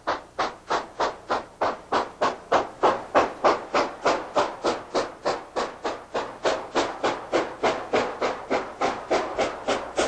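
Steam locomotive exhaust chuffing in a steady, even rhythm of about four beats a second as the engine runs.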